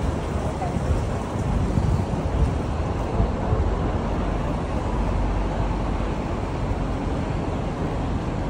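City street traffic noise: cars running nearby, with low wind rumble on the microphone.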